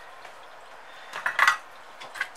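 Flush cutters stripping the insulation off the end of an ESC power wire: a short cluster of sharp metallic clicks a little over a second in.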